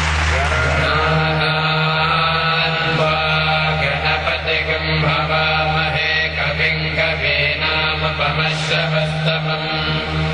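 Devotional chant sung over a steady low drone, played for the ceremonial lamp lighting.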